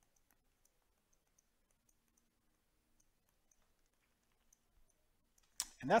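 A scatter of faint, light clicks, two or three a second, from a stylus tapping on a tablet screen while handwriting. A man's voice begins near the end.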